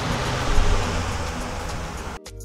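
Steady rushing background noise with a low rumble, fading a little toward the end, and a brief louder bump about half a second in.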